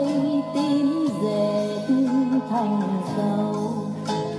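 A song playing, with a singing voice carrying a wavering melody over instrumental backing. It is part of a medley of Republic of Vietnam (South Vietnamese) songs.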